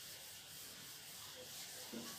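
Faint rubbing of a duster wiped across a whiteboard, erasing it.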